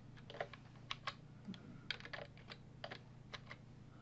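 Faint, irregular taps on a computer keyboard, about a dozen keystrokes, as a line of code is edited, over a low steady hum.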